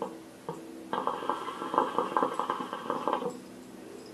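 Hookah water bubbling as a draw is pulled through the hose: a dense, rapid gurgle that starts about a second in and stops after about two seconds.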